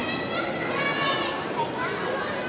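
Children's voices talking and calling out over a murmur of background chatter.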